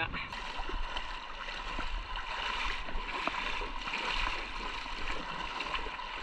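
River water rushing over rocks, a steady hiss, with a few faint knocks.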